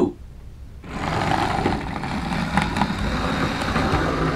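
Original Ringfield motor of a Hornby HST power car running in reverse on the track, starting about a second in as a steady whir with wheel rumble. It runs a little rough, not as smooth as a newer model, because it has gone 10 to 15 years without a service.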